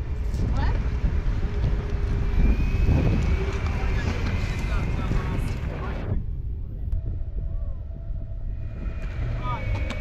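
Electric skateboard rolling over a concrete path: steady wheel rumble with wind buffeting the microphone and a thin, steady whine above it. The noise drops sharply about six seconds in.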